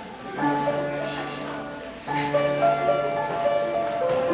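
Upright piano playing a slow introduction: sustained chords struck about a second and a half apart, with further notes added between them.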